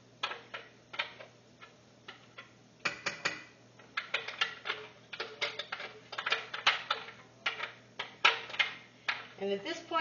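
A spoon scraping and knocking against a blender jar to get the last of the blended mole sauce out, in quick irregular clinks and taps. The taps are sparse at first and come faster from about three seconds in.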